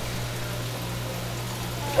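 Steady low hum with an even wash of running water, the circulation of a seawater touch tank.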